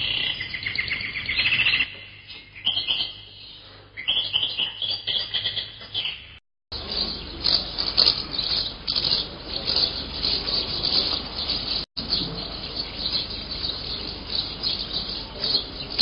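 Birds chirping and insects calling together, a dense high chorus that breaks off briefly twice at the edits.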